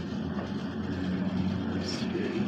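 Steady low hum and rumble inside an aerial tramway car as it rides along its cables, climbing away from the station.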